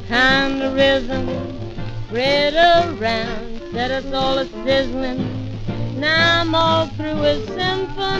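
A 1937 swing band recording playing its instrumental introduction: a bending melody line over a steady low bass part, before the vocal comes in.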